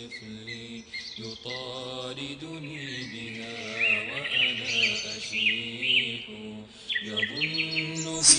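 Wordless vocal humming in a slow chant of long held notes, with birds chirping over it in short quick calls from about four seconds in.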